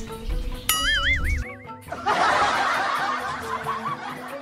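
Light background music with a wobbling, warbling cartoon-style sound effect about a second in, followed by about two seconds of canned laughter.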